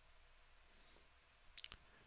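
Near silence: quiet room tone, broken about one and a half seconds in by a quick run of three or four faint clicks.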